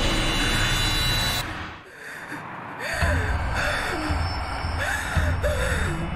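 A frightened woman gasping and whimpering over dark horror-film music. The music drops away about one and a half seconds in and comes back as a low pulsing beat under her short, wavering whimpers.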